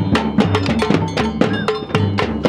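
Marching drums, waist-slung snare drums, beaten in a quick, steady rhythm of several strokes a second, with a bright metallic ring on some strokes.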